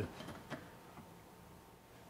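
Quiet room tone with two faint short clicks, about half a second and a second in.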